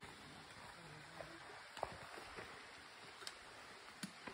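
Faint footsteps on a dry, leaf-strewn dirt trail: a few soft, irregular crunches over a quiet, steady background hiss.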